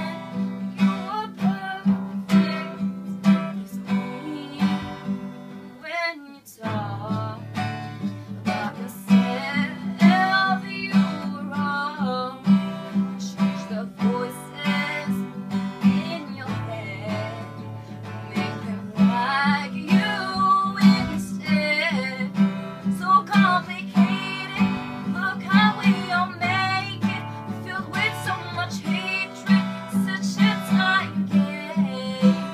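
Acoustic guitar strummed in a steady rhythm, with a girl's voice singing a pop song over it. The playing breaks off briefly about six seconds in, then picks up again.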